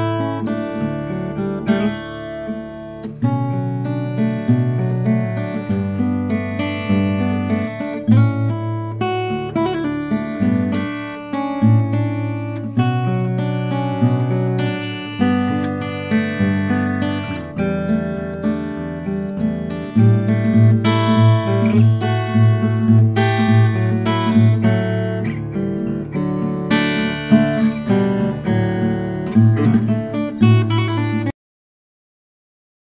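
Lowden S-35 acoustic guitar, cedar top with walnut back and sides, played solo: a fingerpicked melody of many single notes over ringing bass notes.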